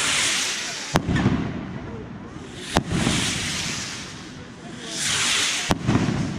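Fireworks display: three sharp bangs of aerial shells bursting, about a second in, just before the middle and just before the end. Between them are swells of high hissing as rockets rise.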